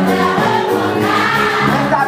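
A choir of girls singing a gospel song together in unison, with musical accompaniment.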